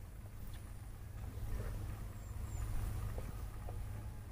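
Open-air background: a steady low rumble with a few faint, scattered clicks and no golf shot struck.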